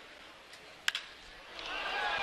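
A wooden baseball bat cracks once against a pitched ball about a second in, a well-struck hit that goes for a home run. Crowd noise swells into cheering right after.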